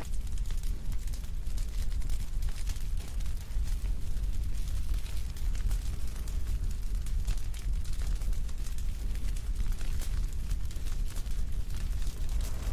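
Fire sound effect: a steady deep rumble with constant crackling.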